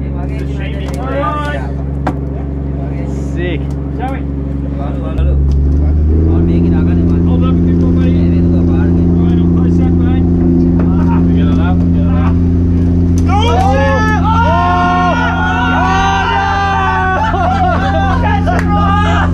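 Boat engine running with a steady low drone that rises in pitch and gets louder about five seconds in, and holds there. Voices shout over it near the end.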